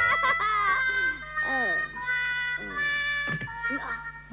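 A child's voice chanting or singing in long held notes and falling cries, over background music.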